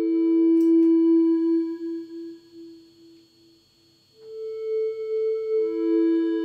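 Pure, sine-like synth tones from a Line 6 Helix's 3-note generator block, triggered from its footswitches. Two sustained notes ring and fade out, then new notes come in about four seconds in and again near the end.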